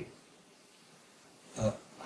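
A pause in a man's speech: near silence, then one short hesitant 'uh' about one and a half seconds in.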